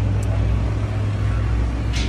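A steady low motor drone with an even hiss over it, with no change in pitch.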